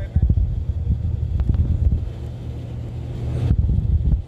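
Wind buffeting the microphone: a low, uneven rumble with a few small knocks, easing off a little midway and picking up again near the end.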